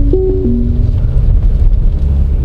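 A short electronic chime of a few steady stepped notes from the Citroën C4 Grand Picasso's navigation and voice-command system, lasting under a second, over a steady low rumble in the car's cabin.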